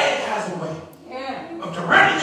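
A man preaching into a microphone with his voice raised. It drops away briefly about a second in, then picks up again near the end.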